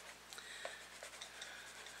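A colored pencil scratching faintly on paper in short, irregular strokes.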